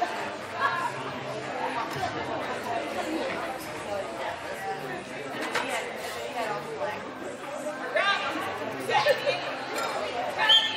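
Indistinct chatter of many voices in a large indoor hall, with a couple of raised voices calling out near the end.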